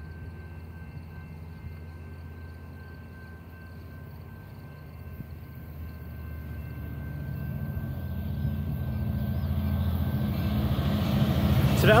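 Approaching passenger train led by an EMD F59PHI diesel locomotive, its low engine rumble faint at first and growing steadily louder from about halfway through as it nears.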